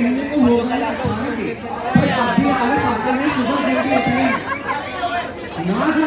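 A man's voice talking through a microphone over the steady chatter of a crowd in a hall.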